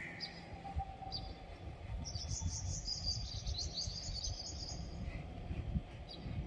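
Small birds chirping: a few high chirps near the start, then a quick string of twittering calls from about two seconds in to about five seconds, over a steady low rumble.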